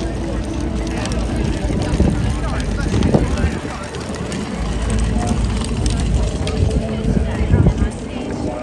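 Crowd chatter: many people talking at once, none clearly, over a steady low rumble.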